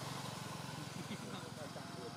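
A small engine running steadily at idle, with faint voices over it about a second in.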